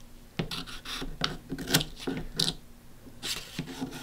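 Scissors making a few short snips through vinyl backing paper, with paper and tape rubbing and scratching between the cuts.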